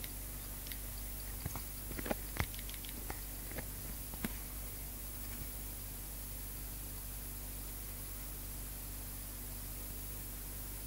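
Homemade pulse motor running, its magnet rotor spun by a pulsed coil: a steady low hum, with a few irregular clicks in the first four seconds.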